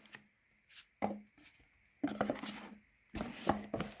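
A phone being set into the tray of its cardboard retail box and the lid slid on: a few short scrapes and taps of cardboard and plastic, then a longer rub with a low thump near the end as the box closes.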